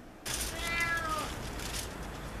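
A domestic cat meowing once: a single call lasting under a second that drops in pitch at the end, over a steady low background hum.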